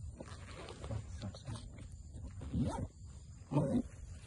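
Two short, low vocal sounds about a second apart in the second half, the loudest things here.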